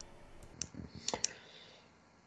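A few faint, short clicks in a quiet pause: one about half a second in and a quick pair just after one second.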